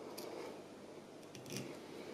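Small fly-tying scissors snipping the long fibres of a large streamer fly: one short snip just after the start, then two or three quick snips about a second and a half in, the last the loudest.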